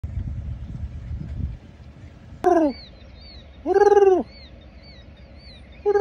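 A man's voice mimicking bird calls: three loud hooting coos, the first sliding down in pitch, the next two rising and falling. A faint high chirp repeats about twice a second behind them.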